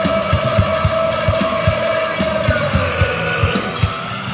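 Funk-punk band playing on a 1992 studio demo tape: a long, wavering held note that sags in pitch near the end, over steady drum hits at about four a second.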